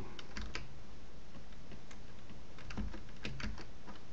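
Computer keyboard and mouse clicks, scattered: a few taps near the start and a quick run of clicks in the last second and a half, over a faint steady hum.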